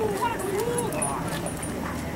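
Police explosive-detection dog whining and yipping, with wavering cries that rise and fall in pitch, mostly in the first second. The dog is eager for its toy reward during a vehicle search.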